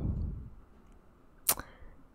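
A single short, sharp click about one and a half seconds in, followed by a much fainter tick.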